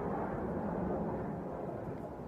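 Distant engine noise: a steady low rumble that slowly fades.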